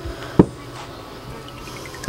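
A single sharp knock about half a second in: the butt of a hammer handle tapping a rear main oil seal home in its aluminium retainer.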